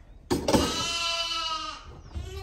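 A hungry lamb bleating for its bottle of milk: one long call that starts about a third of a second in and lasts over a second.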